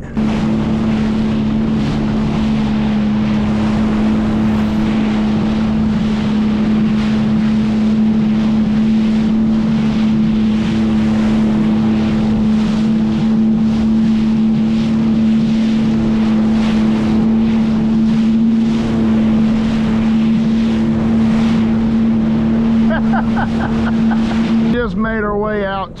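Sea-Doo Fish Pro personal watercraft running at steady cruising speed: an engine and jet drone at one unchanging pitch over rushing water spray and wind on the microphone. It falls away about a second before the end as the craft slows.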